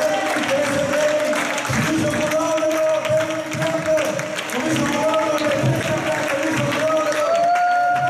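A congregation praising and praying aloud all at once, a dense mass of overlapping voices, with a singing voice holding long notes over it that step up in pitch near the end.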